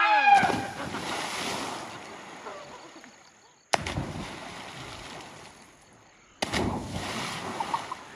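People jumping off a rock into deep river water: three loud splashes, each dying away into water rushing and settling, the first opened by a person's shout.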